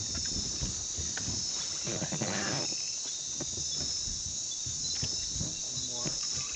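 Chorus of night insects, a steady high-pitched trill.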